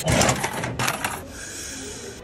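Coins dropping into the slot of a coin-operated trading-card vending machine, a quick run of metallic clicks and clinks over the first second, followed by a steady hiss.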